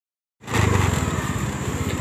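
Motorbike engine running with a rapid, even pulse as the bike is ridden, the sound coming in about half a second in after silence.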